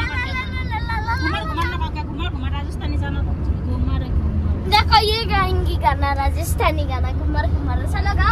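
A girl's high voice talking and exclaiming over the steady low rumble of a car cabin on the road.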